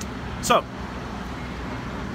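Steady city street traffic noise, an even low rumble of passing vehicles.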